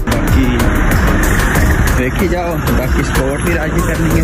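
Town-street traffic: cars and a van driving slowly past, with people's voices from about halfway through.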